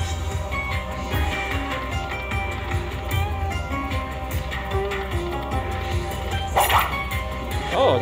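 Aristocrat Dollar Storm Ninja Moon slot machine playing its electronic free-games music and reel-spin tones as the reels spin and stop, with a brief sharp burst of noise about two-thirds of the way in.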